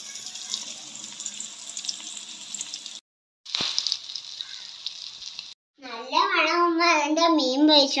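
Masala-coated fish pieces shallow-frying in hot oil in a kadai, a steady sizzle with fine crackling, broken by a short cut near 3 seconds in. A voice comes in about 6 seconds in.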